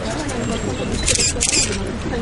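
Low murmur of voices with two quick bursts of camera shutter clicks about a second in, from press photographers.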